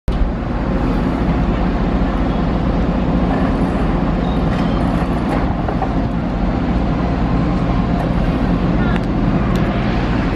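Steady, loud motor rumble with people talking in the background.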